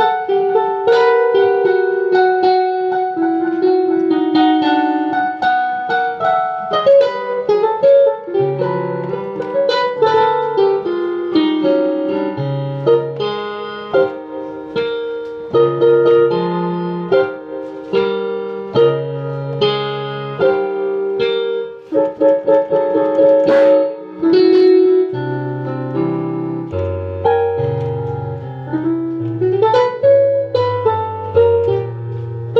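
Piano music: a melody of single struck notes in the middle range, with a bass line entering about eight seconds in and moving lower near the end.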